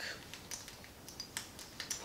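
Small white clutch with gold hardware handled in the hands: a few faint, scattered clicks and light rustles.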